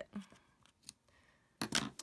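Small scissors snipping the ends of black baker's twine: a couple of short, quiet snips, then a louder clatter near the end as the scissors are set down on the cutting mat.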